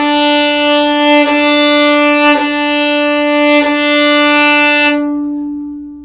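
Violin playing one sustained open-string note with heavy bow weight at the frog, a lot of bow and the hair close to the bridge, giving a strong, heavy tone. The note is held through three bow changes, then rings down near the end.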